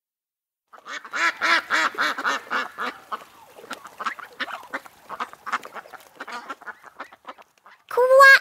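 Ducks quacking: a fast run of repeated quacks that starts about a second in, is loudest over the first couple of seconds, then thins out towards the end.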